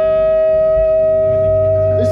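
Distorted electric guitar ringing through its amplifier in one steady, unbroken droning tone, like feedback, with no drums.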